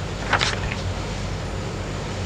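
Steady low hum and hiss of an old lecture recording, with one brief sharp noise about a third of a second in.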